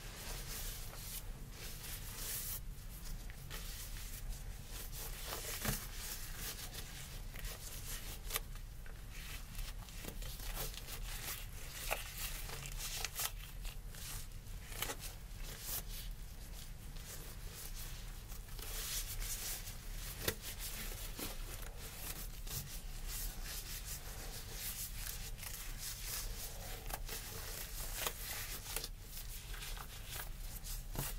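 Crinkling and rubbing of a thin disposable examination glove as it is pulled on over the fingers and the gloved hands are rubbed together, with many small crackles and snaps throughout.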